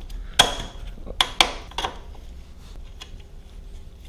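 Sharp metallic clinks and knocks of a steel bolt and hand tools against a motorcycle's rear suspension linkage as the last dog-bone bolt is worked into its hole, four strikes in the first two seconds, the first ringing briefly, then faint handling noise.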